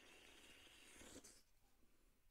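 Very faint sounds of a person drinking from a beverage can, fading out about a second and a half in.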